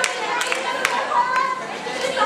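Young people's voices calling and chattering at once during a volleyball game on an open court, with a few sharp smacks in among them.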